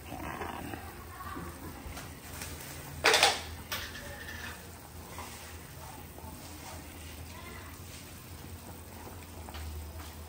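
A pot of bulalo soup boiling steadily on the stove, with one short, loud clatter about three seconds in.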